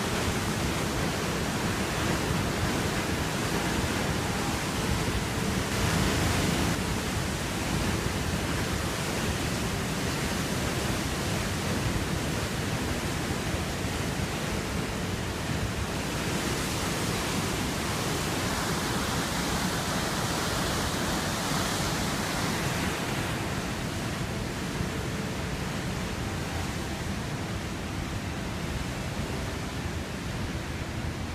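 Water released from a dam's outlet tunnel rushing and churning down a concrete tailrace channel, a steady rushing noise that swells a little now and then.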